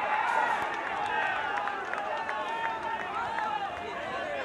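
Several people talking and calling out at once, with no single clear voice: players and spectators around an outdoor football pitch. A steady, indistinct babble of voices.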